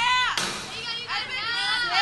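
Girls' high-pitched shouting and cheering from softball teammates for a batter's swing, with a short burst of noise about half a second in.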